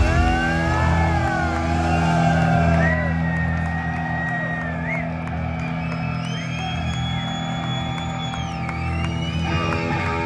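Heavy metal band's electric guitar and bass holding a ringing chord while the crowd cheers and whoops, with a long high whistle near the end.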